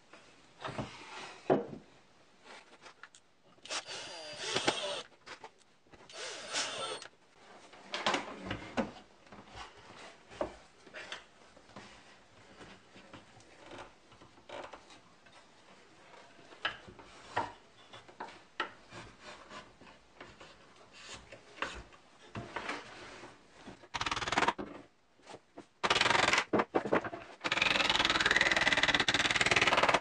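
Wooden plywood router-carriage parts and a plunge router being handled and fitted together on a workbench: scattered knocks, taps and clatter of wood. Near the end comes a longer, louder stretch of continuous noise.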